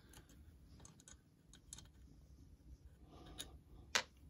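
Faint, scattered small clicks and taps of hands handling an old metal mortise lock and tools on a workbench, with one sharper click near the end.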